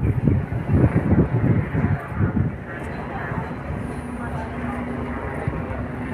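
Voices talking for the first two seconds or so, then a steady low drone with a faint held hum from a distant motor.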